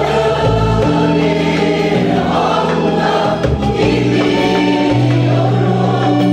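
Women's choir singing a Turkish song, accompanied by oud and accordion.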